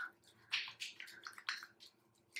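Hands rubbing together during handwashing: a series of short, soft, wet swishing strokes of skin on skin.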